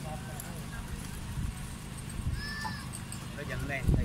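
Open-air rooftop ambience: a steady low rumble of wind on the microphone under faint, distant voices. A short, high, arching whistle-like call comes about two and a half seconds in, and a few brief chirpy calls come near the end.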